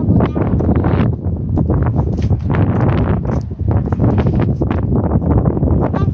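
Wind buffeting a phone's microphone on an open seawall: a heavy, steady low rumble, with irregular short clicks and knocks throughout.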